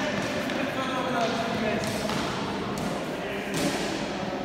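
Indistinct background voices chattering in a large, echoing hall, with a few sharp knocks.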